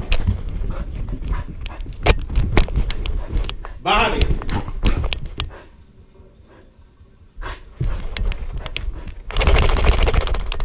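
A dog's paws thudding and a harness-mounted GoPro knocking about as the dog runs down carpeted stairs and dashes around a room, a quick run of sharp knocks and thumps that pauses for a moment midway and picks up again, loudest near the end. It is the dog's frantic running after a shower.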